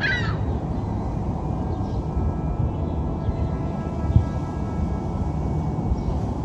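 Steady low rumble of outdoor city ambience, with one short falling bird call right at the start and a single low thump about four seconds in.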